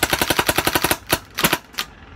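WGP 2005 Superstock Autococker paintball marker on an electronic SF trigger frame firing a rapid, even string of shots, about a dozen a second, as the trigger is walked, then a few slower shots before it stops just short of two seconds in. The marker is cycling properly on its freshly rebuilt solenoid.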